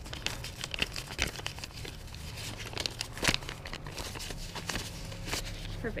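Close rustling and crinkling of paper dollar bills being pulled out and counted by hand, with scattered small clicks and the rub of clothing near the microphone.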